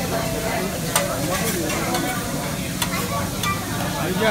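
Hot hibachi griddle sizzling steadily as it is wiped down, with a few sharp clicks about a second in and near three seconds.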